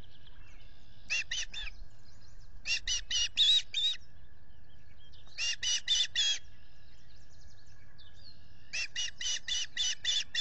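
Osprey calling: four bursts of rapid, high, whistled chirps, each a quick run of several notes, spaced a couple of seconds apart.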